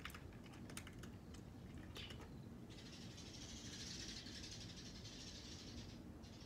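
A cat chewing dry kibble: faint, irregular crunchy clicks over the first couple of seconds. A steady high hiss follows in the second half.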